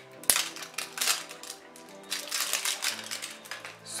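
Small plastic face-scrub jar handled at its lid by fingers: a run of light, irregular clicks and crinkles, the sharpest about a third of a second in, over soft background music.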